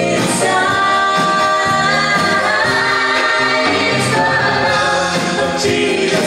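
A live band playing a worship song, with singing over keyboards, electric guitar and drums. The voices hold long notes.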